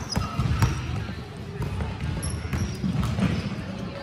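A basketball dribbled on a hardwood gym floor, bouncing several times. Short sneaker squeaks come in over background voices.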